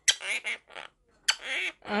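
Quaker parrot (monk parakeet) chattering: about five short calls in quick succession, with a gap just after the middle.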